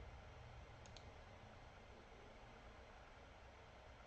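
Near silence with steady room tone, broken about a second in by a faint quick pair of computer mouse clicks.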